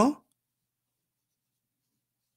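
The end of a spoken word, then near silence.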